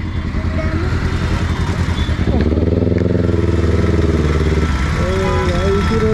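Kawasaki Ninja ZX-10R's inline-four engine running in slow traffic; about two seconds in the revs climb quickly and are held steady for a couple of seconds before easing off.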